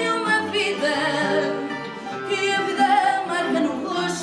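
Live fado: a woman singing, holding long notes with vibrato, accompanied by a plucked Portuguese guitar and another guitar.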